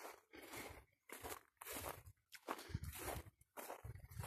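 Faint footsteps crunching on a dry grass and dirt track at a steady walking pace, about two steps a second.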